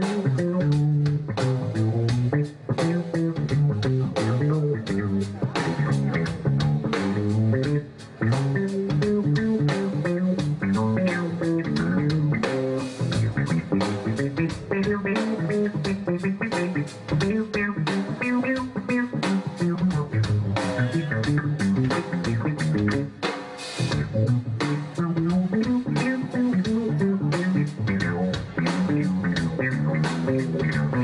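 Electric bass guitar taking a solo in a live blues band, a moving low melodic line over a steady beat.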